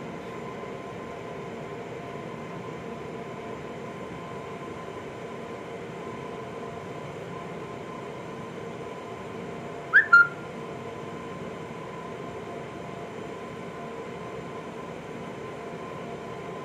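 Steady room hum with a thin constant tone, like fans running. About ten seconds in, a short double chirp falls in pitch.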